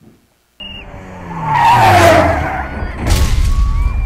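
Rally car passing at speed on a gravel-strewn road: its engine note falls as it goes by, with a loud rush of skidding tyres and spraying gravel at its peak. A second burst of gravel noise follows about a second later.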